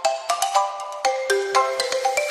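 Background music: a quick, bright melody of short notes over a ticking beat.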